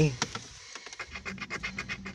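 A coin scraping the coating off a paper scratch-off lottery ticket, in quick repeated strokes.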